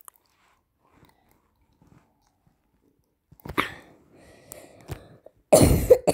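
A young girl coughing close to the microphone, after a few quiet seconds: a short cough about three and a half seconds in, then a louder one near the end.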